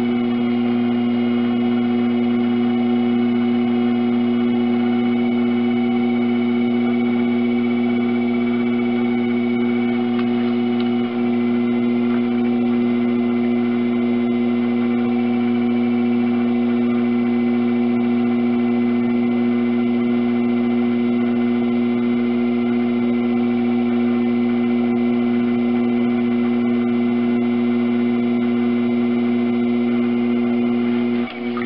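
Electric potter's wheel motor running at a steady speed: a constant, loud hum with higher whining tones above it, and a brief small dip about eleven seconds in.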